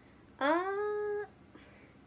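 A single high-pitched vocal cry, rising in pitch and then held steady for just under a second before cutting off suddenly.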